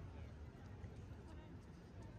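Faint ambience of a crowded pedestrian quay: indistinct voices of passersby over steady low background noise.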